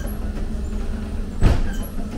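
Ghost train ride car rumbling steadily along its track, with a single sharp bang about one and a half seconds in.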